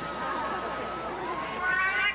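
Marching band music in a soft passage: a single high note held for about a second, then more instruments entering near the end.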